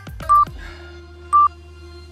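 Interval timer's countdown beeps: two short, high, single-pitched beeps about a second apart, the first about a third of a second in, counting down the last seconds of the work interval. Background music plays underneath.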